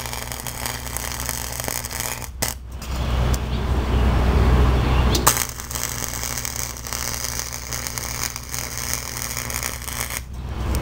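Clarke 180EN wire-feed welder running flux-core wire: the arc crackling and sputtering as a bead is laid on steel tubing, with a short break in the arc about two and a half seconds in before it strikes again.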